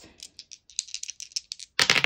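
Pair of six-sided dice shaken, a quick run of small rattling clicks, then thrown onto a game board near the end, clattering loudly as they tumble to a stop.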